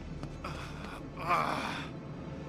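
A person's gasp, once, starting a little over a second in and lasting about half a second.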